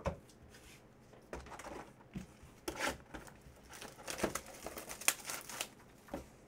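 Plastic shrink wrap crinkling and tearing as a sealed hobby box of trading cards is opened, with irregular rustles and a few sharp clicks, busiest in the last two seconds.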